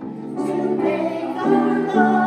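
Children's choir singing together, holding sustained notes that change pitch every half second or so.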